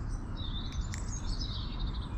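Small songbirds chirping: a quick run of high, repeated chirps through the middle, over a steady low rumble.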